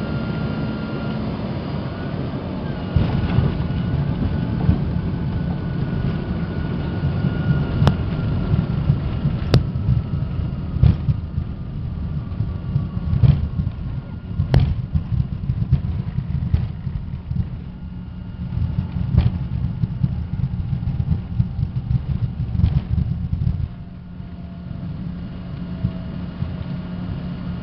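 Cabin noise of an American Eagle regional jet rolling out on the runway after landing. A heavy low rumble with repeated bumps and knocks gets louder about three seconds in, over a faint engine whine slowly falling in pitch as the jet slows. The rumble drops away near the end.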